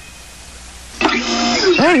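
Faint hiss for about a second, then a cartoon character's voice starting to speak.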